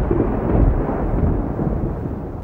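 A deep rolling rumble of thunder that slowly dies down.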